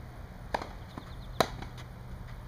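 Tennis ball struck by rackets in a rally: a fainter strike about half a second in, then a louder, sharper hit shortly before the end.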